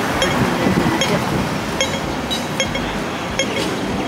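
A pedestrian crossing's audible signal sounding short, sharp beeps over and over, roughly twice a second, over the steady noise of street traffic.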